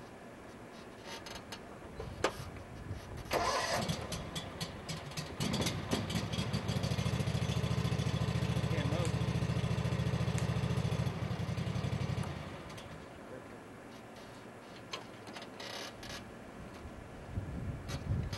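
A New Holland zero-turn ride-on mower's small engine cranks and catches about three seconds in. It runs steadily for several seconds, then is shut off about twelve seconds in.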